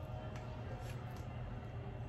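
A steel spatula edge pressed down through a slice of toasted besan-coated bread on a plate, giving a few faint soft ticks over a steady low room hum.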